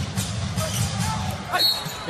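Arena crowd noise during a live NBA game, with a basketball being dribbled on the hardwood court.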